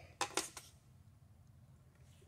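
A steel machinist's parallel set down on a milling machine's steel table: two light metal clinks in quick succession near the start, then only a faint low hum.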